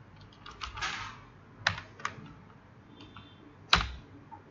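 Computer keyboard typing: a few irregular keystrokes, with a louder click near the end.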